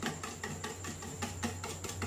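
A hand mixing a milky liquid in a stainless steel bowl: irregular small splashes and clicks, over a steady low hum.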